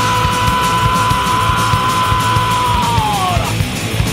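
Loud punk rock band playing, with fast, dense drumming under one long held high note that bends down in pitch about three seconds in.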